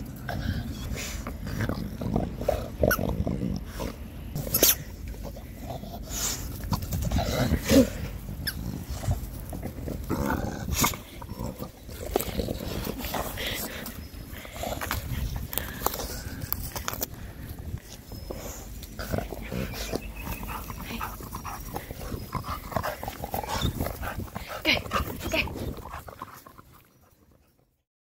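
A dog sniffing and snuffling close to the microphone as it noses through grass, with scattered knocks and rustles. The sound fades out near the end.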